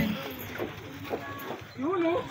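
Faint background voices of people talking, then a louder voice starting near the end.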